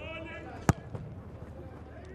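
A football is kicked once, giving a single sharp thud under a second in: the boot strikes the ball on a corner kick. A player's short shout is heard at the very start.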